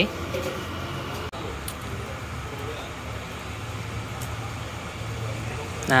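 Steady low hum of bus engines and traffic across a bus terminal, with faint distant voices. The sound cuts out for an instant about a second in.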